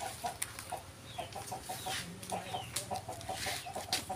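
Chickens clucking in a run of short, repeated notes, several a second, with a few faint higher-pitched falling chirps among them.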